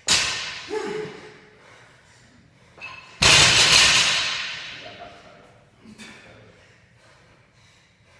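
A barbell loaded with bumper plates is dropped onto the rubber gym floor, a sharp thud right at the start that rings away over about a second. A louder, longer rush of noise follows about three seconds in and fades over a second and a half.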